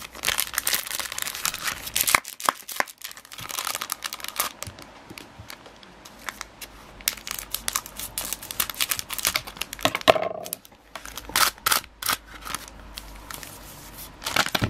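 Foil Pokémon card booster pack crinkling in the hands and being snipped open with scissors, in short irregular bursts of crackle and clicks.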